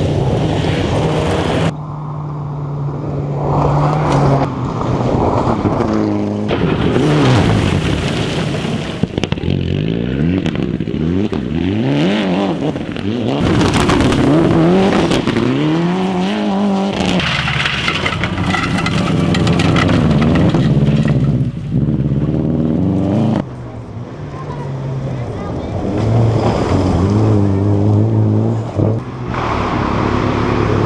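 Rally car engines, among them Mitsubishi Lancer Evolutions, revving hard as the cars accelerate past on gravel, the pitch climbing and dropping with each gear change. Several short passes follow one another with abrupt cuts between them.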